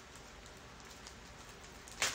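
Faint room tone: a steady low hiss with no distinct sounds.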